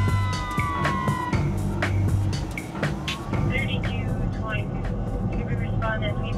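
Police siren wailing, its pitch falling over the first second or so, under a music track with a steady beat.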